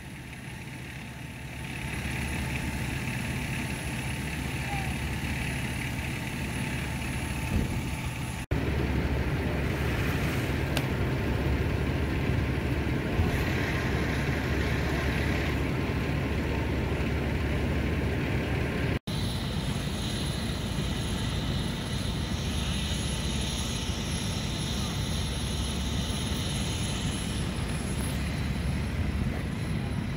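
Fire engines idling at the scene: a steady low engine rumble, broken by two brief dropouts about a third and two-thirds of the way through.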